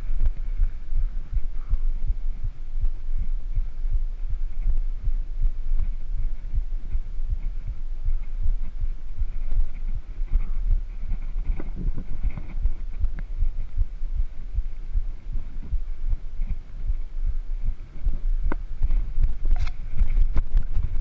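Low, irregular rumbling of wind buffeting and ride vibration on the microphone of a camera carried on a mountain bike rolling along a paved road, with a few sharp clicks near the end.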